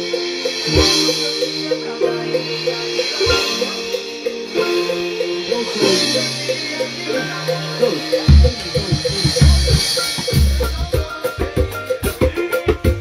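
A recorded music track plays with held bass notes and a steady beat. From about eight seconds in, a surdo bass drum joins with strong, deep, repeated hits.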